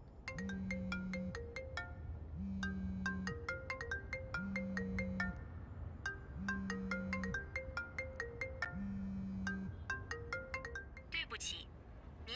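Mobile phone ringtone playing a bright marimba-like melody, repeated in phrases with a low hum pulsing on and off about every two seconds; the call goes unanswered, and near the end a recorded operator voice starts.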